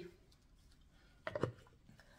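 Near silence: room tone, broken a little past halfway by one short, low sound lasting about a quarter second.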